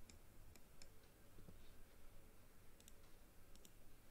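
Faint computer mouse clicks over near-silent room tone: a few scattered single clicks, then a couple of quick pairs near the end.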